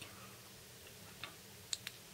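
Push-button switch of a Fenix TK35 LED flashlight clicking faintly three times in the second half as the light is switched off and on between modes.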